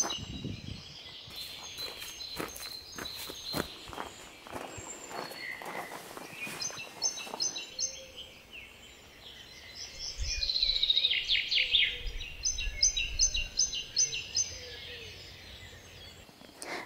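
Garden songbirds singing: repeated quick high chirping phrases, and a descending trill about ten seconds in. Footsteps crunch on a gravel path through the first half.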